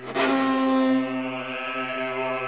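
Six-voice vocal ensemble and viola: low voices hold a sustained chord while sliding slowly between vowels, with a sudden loud accented entry just after the start that falls back after about a second. The viola is bowed extremely close to the bridge (sul ponticello).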